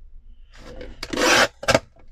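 Guillotine paper trimmer's blade slicing through kraft card: a rasping cut lasting about half a second, then a sharp click as the blade comes down.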